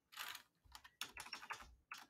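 Faint typing on a computer keyboard: a few keystrokes near the start, then a quicker run of several about a second in.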